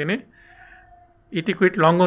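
Man speaking Bengali in a lecture, with a pause of about a second soon after the start before the talk resumes.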